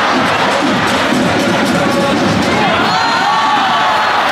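Soccer stadium crowd cheering and shouting together, a loud steady roar of many voices.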